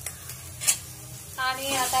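A spatula starts stirring turmeric and chilli powder into masala paste frying in oil in a kadhai, and the sizzle grows louder as the stirring begins near the end. A single sharp click comes about two-thirds of a second in.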